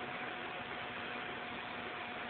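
Steady hiss with a faint, steady hum in a pause between speech: the background noise of an old cassette tape recording.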